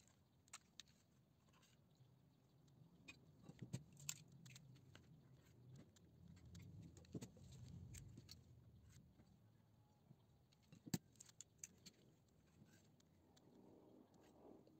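Near silence with a few faint taps and clicks of eggs being cracked and separated by hand, the yolks lifted out with a metal ladle over a plastic bowl. The sharpest click comes late on.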